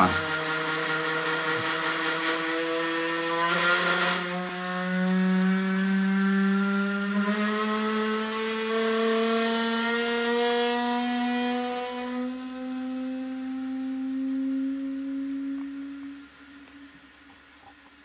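Toilet cistern refilling: the fill valve hums with a steady tone that climbs slowly in pitch as the tank fills, with a short hiss about four seconds in. It stops near the end as the tank is full.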